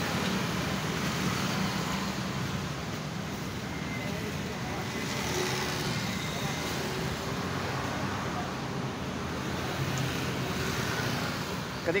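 Steady low rumble of motor traffic with no speech over it.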